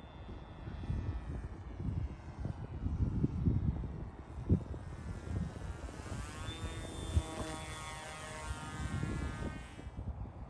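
Electric motor and propeller of a Titan Cobra VTOL RC plane in forward flight, a steady whine that grows louder and falls in pitch as it passes overhead in the second half. Wind buffets the microphone throughout.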